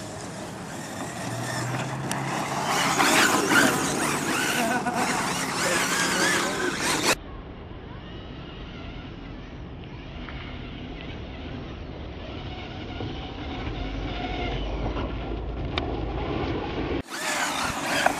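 Brushless electric motor of a Team Associated SC8 RC short-course truck (Steve Neu 1512 motor on a 4S LiPo) whining as the truck drives and spins its wheels through snow, loudest in the first several seconds. The sound breaks off abruptly about seven seconds in and continues quieter and duller, then changes again just before the end.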